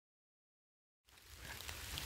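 Silence for about the first second, then faint outdoor background noise with a low rumble fades in.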